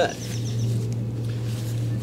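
Outdoor background with a steady low hum, like a distant motor or machine, and a few faint high chirps in the first half second.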